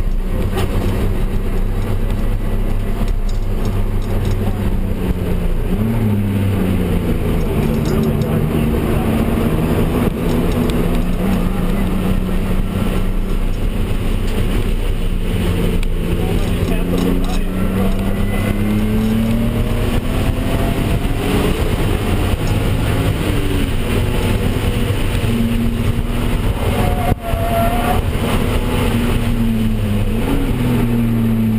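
Turbocharged BMW M3 engine heard from inside the cabin while lapping a road course. The engine note holds steady for stretches, then swings up and down in pitch several times through shifts and corners, with road and tyre noise underneath.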